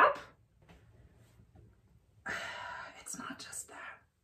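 The tail of a spoken word at the very start, then a near-silent pause, then about a second and a half of breathy whispering.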